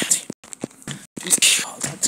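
A person whispering close to the microphone in short breathy bursts, broken by sharp clicks and brief cuts in the audio.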